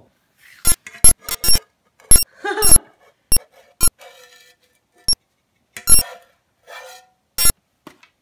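Spatula knocking and scraping against a metal frying pan while congealed baking grease is worked out of it. There are about a dozen sharp, ringing clinks at uneven intervals.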